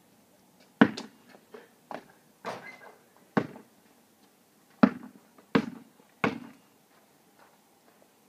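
A basketball thudding: a shot striking the rim or backboard and the ball bouncing on pavement, then dribbled, making about nine sharp thuds. They come irregularly at first and end in three even bounces less than a second apart.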